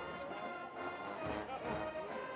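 A brass-heavy marching band playing sustained notes and chords, heard quietly beneath the broadcast.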